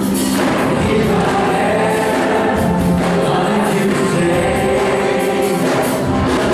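Live praise-and-worship band playing: electric guitars, bass guitar and keyboard over a steady beat, with a group of voices singing together.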